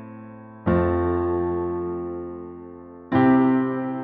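Nord Stage 2 EX keyboard playing slow two-handed major and minor chords: a triad in the right hand over a single bass note in the left. Two chords are struck, about a second in and again about three seconds in, each held and left to fade, with the tail of the previous chord dying away at the start.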